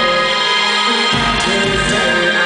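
Loud live band music from a rock concert, with electronic synth layers over the band. The deep bass drops out and then comes back in about a second in.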